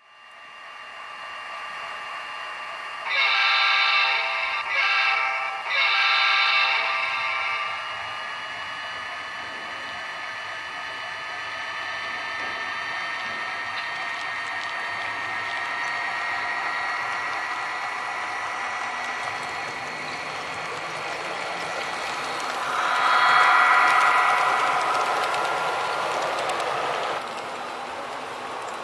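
HO scale model SD70MAC diesel locomotives running with a steady whine whose pitch shifts slowly. The horn sounds three times a few seconds in, and once more, louder and longer, about three-quarters of the way through.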